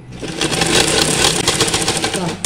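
Sewing machine running at speed, its needle stitching through fabric with a rapid, even clatter that starts again after a brief stop.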